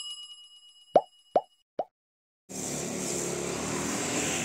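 Animation sound effects: a bright chime fading out, then three quick pops in a row. About two and a half seconds in, a steady background noise begins.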